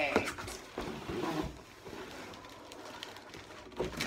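A cardboard box being handled and a folded umbrella stroller in a plastic bag drawn out of it. A few sharp cardboard knocks and rustles come first, then a steady sliding rustle as the stroller comes out, with one more knock near the end.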